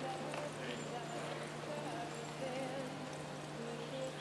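A cutting horse's hooves moving in soft arena dirt as it works a cow, over a steady low hum with faint background voices.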